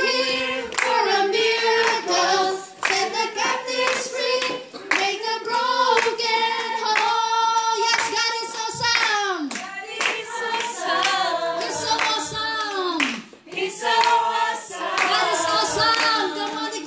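Singing with hands clapping along throughout; long held notes, some falling away at the ends of phrases.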